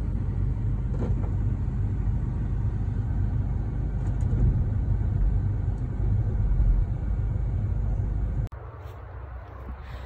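A loader's engine runs steadily close by as its bucket tips a load of compost into a ute's tray, heard from inside the ute's cab as a low rumble. The rumble cuts off suddenly about eight and a half seconds in, leaving quieter outdoor background.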